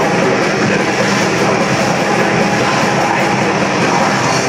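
Death metal band playing live: distorted electric guitars, bass guitar and drums in a dense, steady wall of sound.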